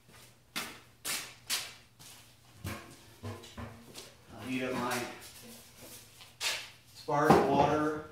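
Footsteps and a few sharp knocks, then handling noise from a large stainless steel pot being carried and set up on a wooden shelf. The loudest sound comes near the end.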